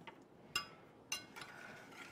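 Two light metallic clinks of a spoon against a stainless steel saucepan, a little over half a second apart, each ringing briefly, as the ginger and lavender syrup is stirred.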